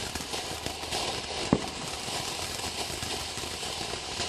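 Winda Ballerina's Ball rotating ground fountain firework burning, a steady hiss full of fine crackling sparks, with one short, louder thump about a second and a half in.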